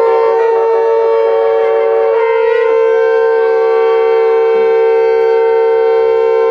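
A long curved shofar blown in one long, steady blast, with a brief waver in pitch a little before the middle.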